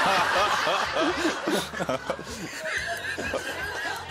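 Several people laughing and chuckling together, with snatches of talk mixed in; the laughter is loudest in the first second.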